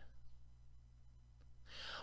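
Near silence with a steady low hum, and a soft intake of breath near the end, just before speech resumes.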